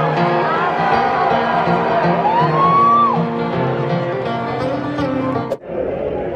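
Live concert music recorded from the audience: a country band with acoustic guitar, with one long rising, held note in the middle. It breaks off suddenly near the end.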